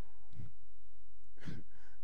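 Two short breaths from a man into a handheld microphone, about half a second in and again near the end, over a steady low hum.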